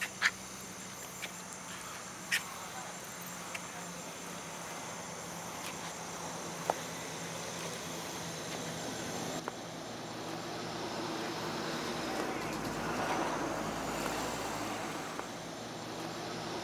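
Night insects chirping in a steady, high chorus, with a few sharp clicks in the first seconds. From about ten seconds in a vehicle's rumble rises and grows louder, as if approaching.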